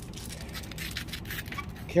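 Irregular scratchy crunches on icy, crusted snow, over a steady low hum.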